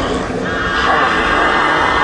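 Horror-film clip audio: the clown Pennywise gives a long, high-pitched shriek that starts about half a second in and holds steady.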